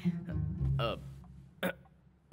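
A man's wordless vocal sounds, a low drawn-out hum then a short 'hm' with a bending pitch, over soft background music, with one sharp click shortly before the end.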